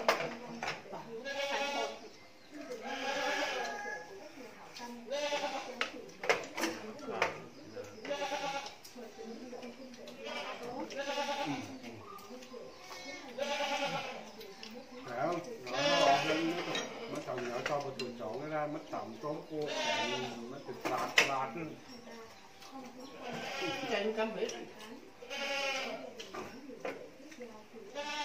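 Several people talking over a meal, with a few sharp clinks of bowls and chopsticks.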